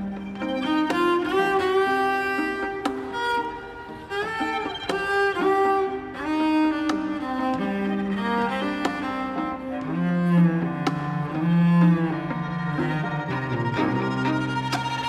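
String quartet of two violins, viola and cello playing bowed, held notes with slides between pitches. The cello comes forward with loud low notes in the last few seconds.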